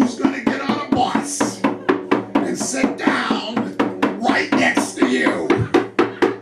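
Hand drum with a skin head beaten by hand in a fast, steady rhythm of about five strokes a second, each stroke ringing at the same low pitch.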